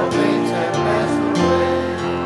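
A slow hymn with sustained chords, sung by a church choir with instrumental accompaniment.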